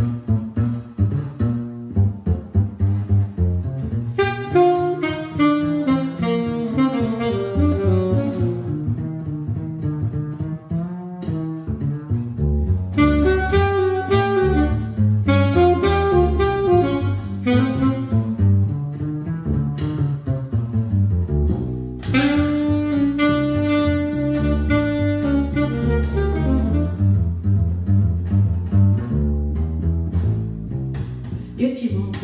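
Jazz saxophone solo in phrases over a plucked upright bass keeping a steady line beneath it. The saxophone holds one long note a little past the middle, then drops out near the end, leaving the bass.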